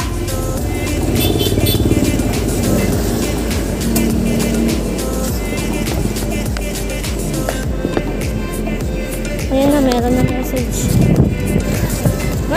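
Background music, over a rough rumbling and rubbing noise close to the microphone.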